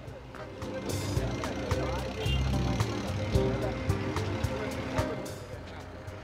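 Road traffic noise: vehicle engines running in congested traffic, as a low steady rumble under background music.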